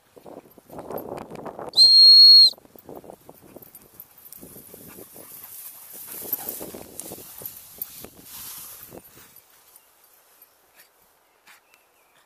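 A single short, loud blast on a handheld whistle about two seconds in: one steady high tone, used to call the dogs. Before and after it, dogs running through long grass make rustling and swishing sounds that die away near the end.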